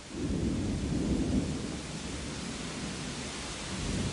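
A roll of thunder breaks in suddenly and rumbles on, loudest in the first second and a half and then easing, over a steady hiss of rain.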